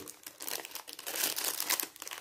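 Clear plastic bag crinkling as hands handle it and the stickers inside, a rapid, irregular crackle.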